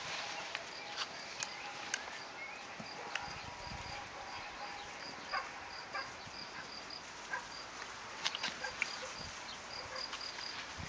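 Doberman puppies scuffling at play, with scattered short knocks and scuffs of paws and mouths on dry ground. A faint high chirp repeats evenly a few times a second behind them.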